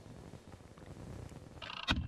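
Faint low outdoor rumble, then near the end a brief hiss and a single sharp crack.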